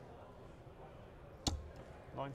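A single sharp knock at a bristle dartboard about one and a half seconds in, over a faint hall background.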